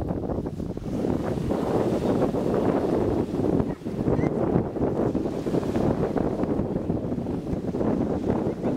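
Wind buffeting the microphone in gusts, with small waves breaking on a sandy shore underneath.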